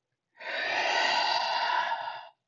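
A person's long, audible exhale, starting about a third of a second in and lasting nearly two seconds.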